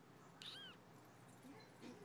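A single short, faint animal call about half a second in, rising then falling in pitch, over near-silent outdoor background.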